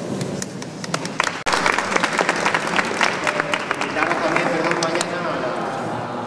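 Audience applauding, a dense patter of claps that thins out near the end, with voices murmuring underneath.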